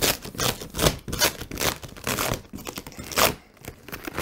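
Cardboard box being opened by hand: tape and cardboard torn and scraped in a run of short, irregular rips, going quiet briefly near the end.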